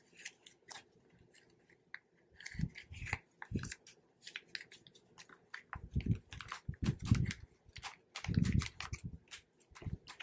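Paper banknotes being folded and slid into clear plastic binder sleeve pockets: quiet, irregular crinkling and rustling, with a few soft thumps as the hands press on the binder.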